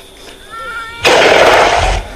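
A short faint high-pitched vocal sound, then a sudden loud rush of breath blown onto the microphone, like a snort or huff, lasting about a second.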